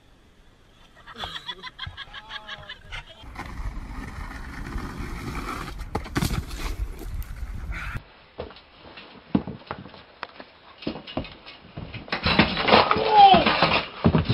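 Scattered knocks and voices, then a loud shout lasting a second or two near the end.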